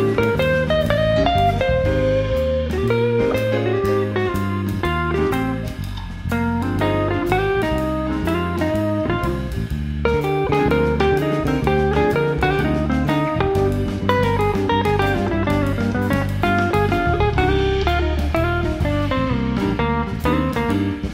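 Jazz band playing a ballad live: an archtop electric guitar plays a moving lead line over bass guitar notes and drums with steady cymbal ticks.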